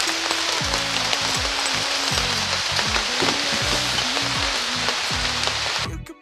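Steady hiss of rain falling, under background music with a moving bass line; the rain hiss cuts off abruptly at the very end.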